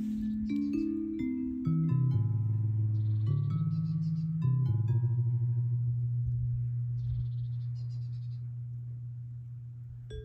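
Electronic music from a plant music synthesizer, which turns a plant's electrical signals into notes. Sustained low tones step from pitch to pitch under short high plinking notes, and the whole fades slowly over the last few seconds.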